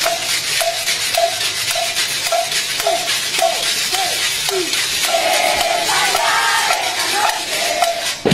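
Outdoor crowd noise, with a short call repeated in an even rhythm about every half second and a longer held call a little past the middle.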